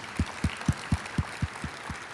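Audience applauding, with a handheld microphone picking up close hand claps as low thuds about four times a second.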